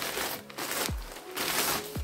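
Clear plastic garment bag crinkling twice as a jumper is pulled out of it, over background music with a steady kick-drum beat.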